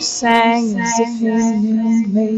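A high singing voice holding a long, gently wavering note in a club dance track, over sparse backing with no drums under it.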